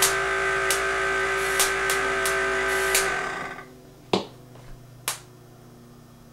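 Van de Graaff generator running with a steady multi-pitched hum and sharp snaps about every half second. About three seconds in the hum dies away quickly. Two more single sharp snaps follow in the quieter room.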